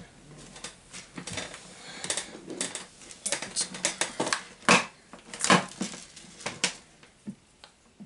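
Irregular clicks, taps and light clatter of objects being handled on a desk, with soft rustling between, dying away near the end.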